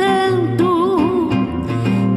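Live samba: a singer holds a long note that wavers and bends, over instrumental accompaniment with a repeating bass line.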